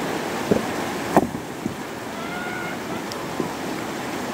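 Shallow river water rushing steadily over rocks, with two short sharp knocks about half a second and a second in.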